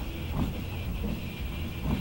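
Corvair's electric windshield wiper motor running, with the wipers sweeping: a faint, steady low hum. The motor runs because the new wiper switch now has a good ground to the dash.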